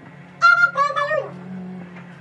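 A cat meowing twice in quick succession, the second meow sliding down in pitch.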